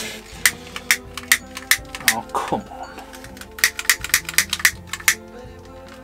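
A string of sharp clicks and light knocks at a small wood-burning stove being got ready to light, about two a second at first, then a quicker run of clicks later on, over background music.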